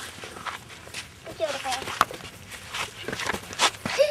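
Footsteps scuffing and crunching on grass and gravel, a quick irregular string of short strokes, with a person's voice heard briefly about a second and a half in.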